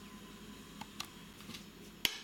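Quiet room tone with a few faint clicks as a mayonnaise jar is picked up off the kitchen counter.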